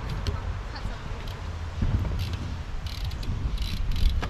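BMX bike rolling across a ramp: a steady low rumble of the tyres on the ramp surface, with light clicks and rattles from the bike.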